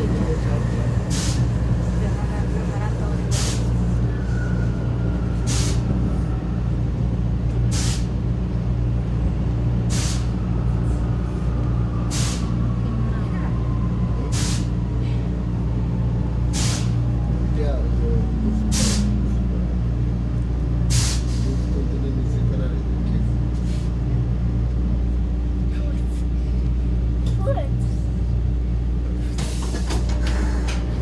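Inside a Vienna U-Bahn train running between stations: a steady low rumble and hum, with a sharp click about every two seconds. A faint motor whine slowly falls in pitch as the train slows before the next station.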